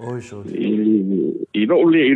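A man's voice holding one drawn-out sound at a steady pitch for about a second and a half, then talking.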